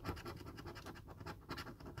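A coin scratching the scratch-off coating of a National Lottery scratchcard in a quick run of short, repeated strokes.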